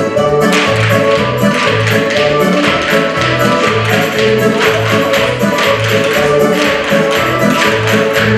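Lively Russian folk-style tune with a bouncing bass line and sharp percussive taps on the beat, about two a second, from hand-held folk percussion.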